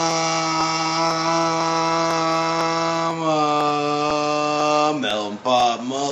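A man's voice holding one long, level vocal note, dropping slightly in pitch about three seconds in, then breaking into quick syllables near the end.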